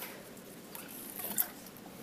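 Faint small rustles and ticks of handling and moving about in a quiet room, the clearest tick about one and a half seconds in.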